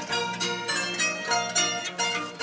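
Sasando, the Rote Island bamboo tube zither with a palm-leaf resonator, plucked in a flowing melody of several notes a second over sustained low bass notes.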